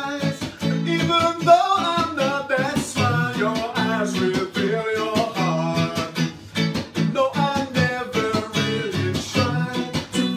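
A man singing a song while strumming a hollow-body electric guitar through an amp, steady rhythmic chords under the melody.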